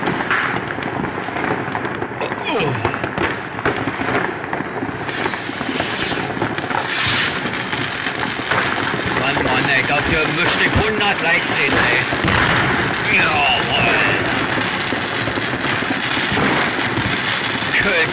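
Dense New Year's Eve fireworks: a continuous crackle and bang of firecrackers and rocket bursts. Whistling rockets glide up and down in pitch about two-thirds of the way through.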